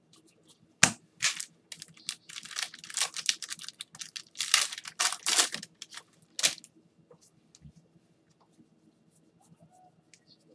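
A sharp knock, then a trading card pack's wrapper being torn open and crinkled in a quick run of ripping bursts for about five seconds, falling to faint ticks of cards being handled near the end.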